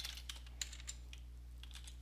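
Faint keystrokes on a computer keyboard: a handful of separate key presses spaced irregularly, as a short hex colour code is typed.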